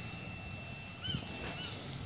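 A bird giving short chirping calls twice, each a quick up-and-down note, over a faint steady high-pitched tone and low outdoor background noise.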